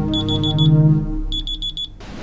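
Smartphone alarm going off: two bursts of four quick high-pitched beeps, waking a sleeper.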